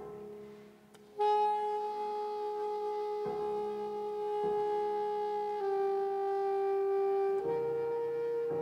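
Saxophone comes in about a second in with long held notes, dipping a little in pitch partway through and rising near the end. Piano notes are struck and left ringing underneath, twice more during the held notes.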